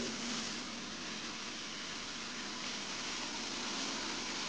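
Steady rushing hiss of a Zipper SS Super Spinner rotary extraction wand working carpet, pulling truckmount vacuum suction while it sprays hot cleaning solution, with a faint steady hum under the hiss.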